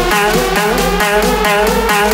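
Vixa-style electronic dance track: a deep bass beat about twice a second under a high lead melody that slides between notes, with a vocal sample saying "let's go" at the start.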